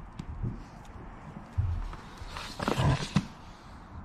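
Scattered low bumps and knocks from a moving bicycle, with a louder rustling, rattling stretch about two and a half seconds in.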